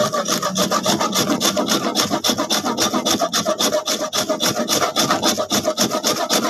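A solid block of pot-baked salt scraped back and forth on a long metal rasp grater, rapid even scraping strokes at about five a second, grinding the salt down to powder.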